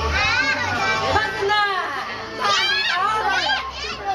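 Young children shouting and squealing excitedly in several high-pitched bursts of cries.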